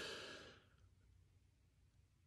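A man's soft exhale, like a sigh, fading out within the first half second, then near silence.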